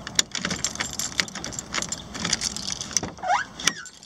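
Small metal pieces jingling and clicking in quick, irregular bursts, with a short rising squeak near the end.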